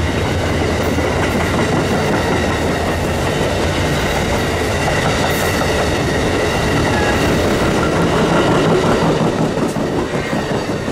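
Amtrak passenger train's Amfleet coaches and baggage car rolling past at speed: a steady loud rumble and clatter of steel wheels on the rails, with a faint high ringing from the wheels above it.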